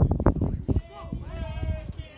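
Spectators at a baseball game: a few loud sharp thumps or claps in the first second, then a long, drawn-out shout from the stands.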